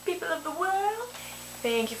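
A drawn-out meow-like call about a second long, its pitch rising, followed by a woman saying "Thank you".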